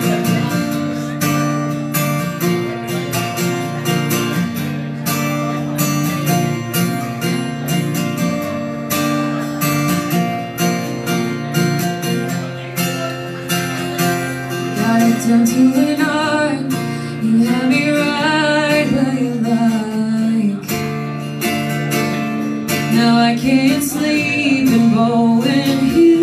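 Acoustic guitar strumming a country song's intro at a steady pace, with a woman's singing voice coming in a little past halfway.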